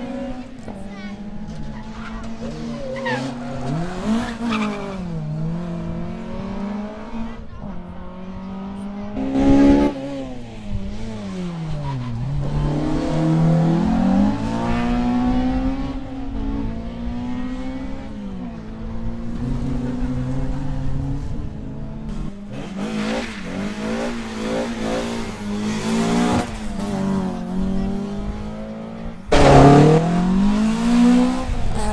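Rally car engines revving hard around a tight course, their pitch climbing and dropping again and again with throttle and gear changes, sometimes two cars heard at once. A sudden louder burst comes about ten seconds in, and a car passes close and loud near the end.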